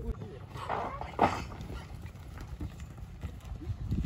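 A bull coming out of the chute with a rider: a short, loud bang about a second in, then the bull's hooves thudding on the dirt arena.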